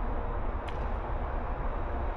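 Steady low rumble of outdoor background noise, with one faint click about two-thirds of a second in.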